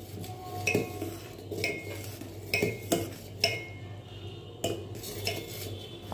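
A metal spoon stirring pearl millet porridge in a stainless steel pot, clinking against the pot's side roughly once a second, each clink ringing briefly.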